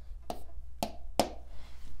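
A stylus tapping on a smartboard's screen while a letter is written: about three short, sharp clicks over a steady low hum.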